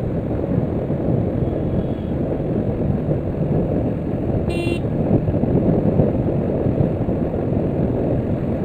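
Steady low rush of wind and engine noise from a Yamaha FZS V3 motorcycle riding at about 60 km/h. A short, high horn toot sounds about halfway through.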